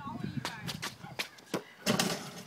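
A run of short sharp knocks from a run-up on concrete, ending in a louder clank near the end as a basketball is dunked through an outdoor hoop.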